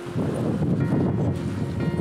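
Low rumbling noise buffeting the microphone, starting just after the start, with faint background music underneath.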